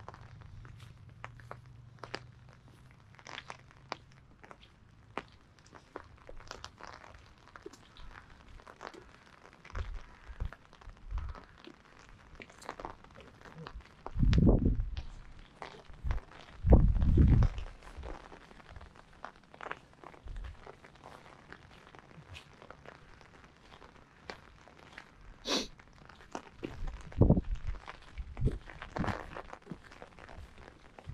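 Footsteps crunching on a wet forest track, short irregular steps throughout. Two loud low rumbles about halfway through, with smaller ones near the end.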